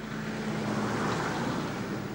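A vehicle passing by: a rush of noise with a steady low hum that swells to a peak and then fades away.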